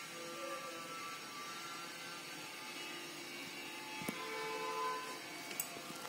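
Faint pencil writing on paper, under faint background music of a few held notes that change pitch now and then, with a single sharp click about four seconds in.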